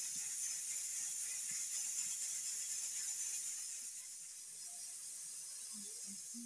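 A steady high hiss throughout, with faint soft squishes of boiled potatoes being crushed by hand in a steel bowl.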